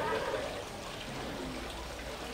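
A pause in a man's sermon, leaving a steady hiss of room noise with faint, indistinct voices in the background.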